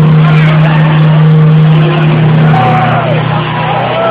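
Live rock concert heard from the crowd: a loud, sustained low droning note through the hall's PA that drops to a lower pitch partway through. Short rising-and-falling whoops come from the audience over it near the end.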